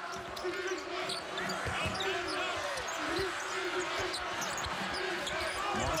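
A basketball being dribbled on a hardwood court, with sneakers squeaking as players move during live play. A steady arena crowd hum runs underneath.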